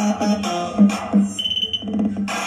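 Music with a pulsing beat of about three beats a second, played loud through a Philips SPA4040B 5.1 home theater speaker system. A short, high, held tone sounds a little past the middle.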